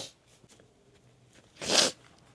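A quiet pause, then one short, loud breath drawn in about a second and a half in, a hiss lasting about a third of a second.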